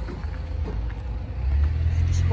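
Low, steady rumble that swells about one and a half seconds in, with a few faint clicks.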